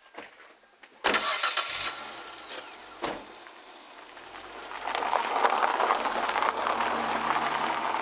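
A vehicle engine starts suddenly about a second in and runs at idle, with a short knock about three seconds in. From about five seconds in it grows louder with a rough crunching noise as the vehicle pulls away over gravel.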